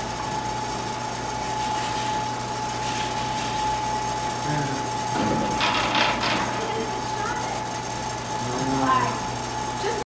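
Automatic sliding door running, its drive giving a steady whine with mechanical clicking, and a short burst of rattling about six seconds in as the door panel slides across a person standing in the doorway.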